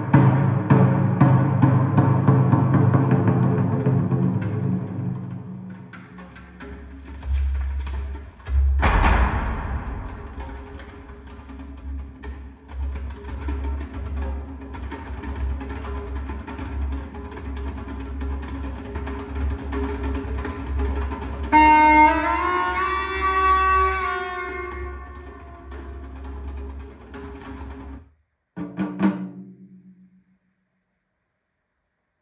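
Recorded music with drums and percussion, played through hi-fi loudspeakers in the room. Deep bass comes in a few seconds in, and a sliding pitched tone sounds past the middle. The music stops shortly before the end, followed by a few brief notes.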